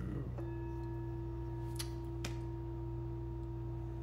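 A single steady bell-like ringing tone starts about half a second in and holds without fading, with fainter overtones above it. Two brief faint clicks come about two seconds in.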